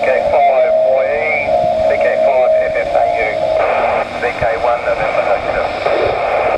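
AO91 amateur satellite FM downlink heard from a receiver's speaker: noisy, tinny radio voices of operators calling through the satellite, with a steady tone under them for the first few seconds.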